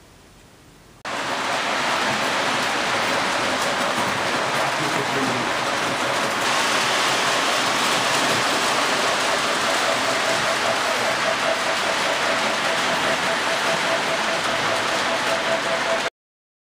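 Model electric trains running on a large train-garden layout: an even rushing rumble that starts suddenly about a second in. A faint steady whine joins it in the second half.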